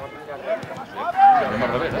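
A voice calling out from the sideline of a football pitch about a second in, over a faint open-air background of other voices.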